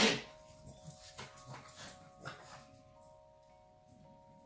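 A pug sneezing: a few short bursts in the first two and a half seconds, the loudest right at the start.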